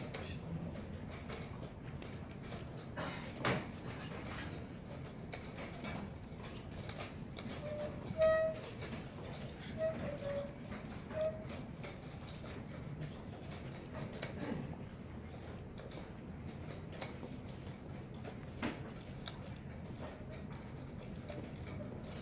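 Steady hush of a playing hall broken by a few sharp clicks of wooden chess pieces being set down and a chess clock being pressed. A handful of short pitched sounds come about eight to eleven seconds in.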